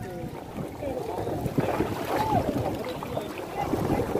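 Water splashing and sloshing as people wade through a canal and pull out water hyacinth, with wind rumbling on the microphone. Faint voices call out in the distance a couple of times.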